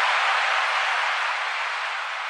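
A steady hiss-like wash of noise with no beat or bass, slowly fading out: the closing noise effect of a DJ dance remix.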